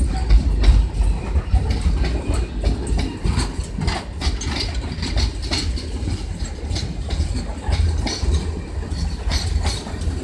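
Wagons of a loaded freight train rolling past close by: a continuous low rumble with many irregular clacks and knocks of steel wheels over the rail joints.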